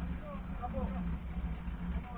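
Safari race car's engine idling with a steady low rumble, with indistinct voices over it.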